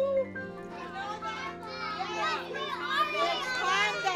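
A class of young children all talking and shouting at once, growing busier about a second and a half in, over background music.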